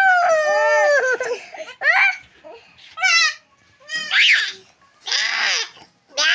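Young goat kid bleating repeatedly: about five high calls, the first long and drawn out, the rest shorter and coming roughly once a second, some with a quaver.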